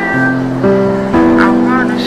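Background music: held guitar-like chords that change about twice a second, with a short gliding high melody line about a second and a half in.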